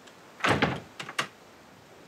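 A wooden door slammed shut: one bang about half a second in, followed by two sharp clicks a moment later.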